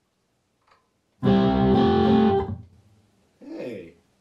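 Electric guitar, a Telecaster played through a Kemper Profiler amp: one loud chord strummed about a second in, ringing for just over a second and then dying away. It is a test of an EQ block ('bass noise cut') loaded to tame a humbucker tone that sounded too heavy. A brief murmured voice near the end.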